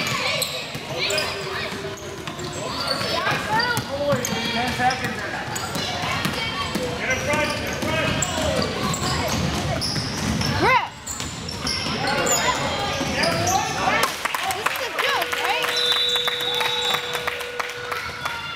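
Youth basketball game on a hardwood gym floor: a ball bouncing, sneakers squeaking and thudding on the court, and players and onlookers calling out in the echoing hall. A steady tone holds through the last three seconds.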